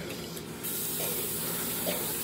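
A steady high-pitched hiss that comes on suddenly about half a second in and holds evenly.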